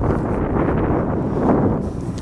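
Wind blowing across the microphone: a steady low rushing noise.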